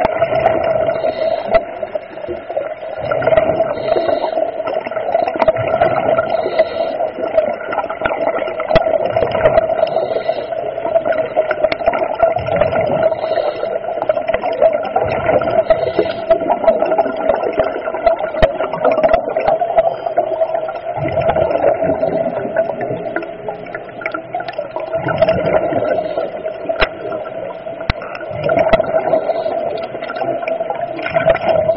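Underwater recording from a diver's camera: a steady hum runs throughout, while the diver's breathing and rushes of exhaled bubbles swell up every few seconds.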